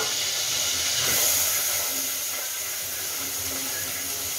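Steady hiss of a lidded aluminium pot cooking on a gas stove burner, turning a little brighter about a second in.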